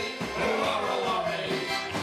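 Live folk band playing: acoustic guitar, banjo, piano accordion and a hand-held frame drum keeping a steady beat, with voices singing over them.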